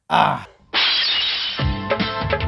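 A short crash-and-shatter sound effect, like breaking glass, then music starting about three-quarters of a second in, with a deep beat thump a little after a second and a half.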